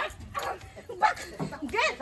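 Short shouted cries and yelps from people scuffling, in brief outbursts about a second apart, quieter than the shouting around them.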